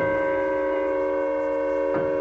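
Chamber ensemble holding a sustained chord of several steady tones.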